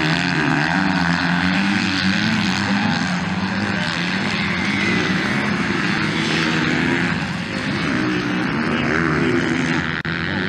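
Racing dirt bike engines, revving hard with their pitch rising and falling as the riders accelerate and shift through the gears.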